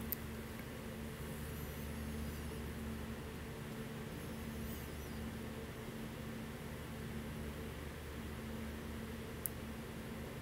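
Steady low hum and hiss of room tone inside the trailer, with one faint sharp click near the end.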